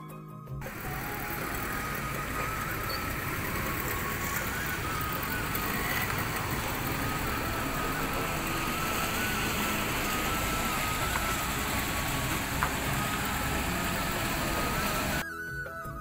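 Heavy rain falling steadily, a dense even hiss, with background music running faintly underneath. The rain starts about half a second in and cuts off suddenly about a second before the end, leaving only the music.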